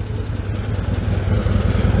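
Can-Am Commander 800R's V-twin engine idling with a steady low rumble.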